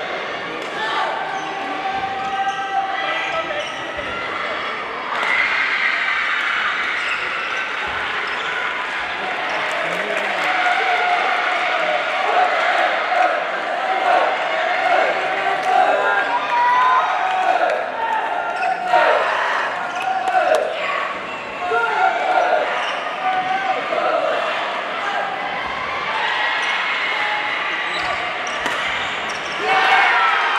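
A badminton doubles rally in a large hall: rackets striking the shuttlecock and shoes squeaking on the court floor, with voices echoing around the hall throughout.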